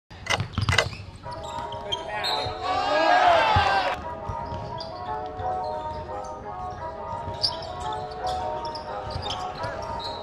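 Basketball game sounds in a gymnasium: sharp ball bounces in the first second, then loud voices shouting about two to four seconds in, over a steady bed of sustained tones.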